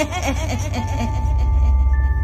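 Ghostly old-woman cackling laugh, a quick run of short pulses falling in pitch and fading out about a second in, over a low droning horror music bed with sustained high tones.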